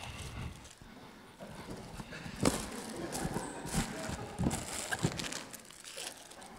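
Irregular knocks, clicks and rustles of a cardboard snack box being picked up and handled close to a handheld microphone.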